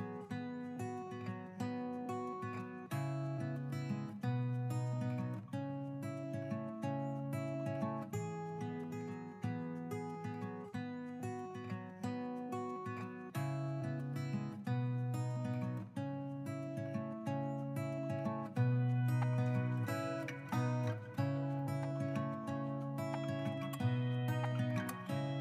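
Background music: acoustic guitar playing plucked and strummed notes in a steady, even rhythm.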